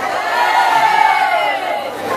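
An audience of many voices calling and cheering back in reply to a greeting, blending into one sound that swells and then fades over about two seconds.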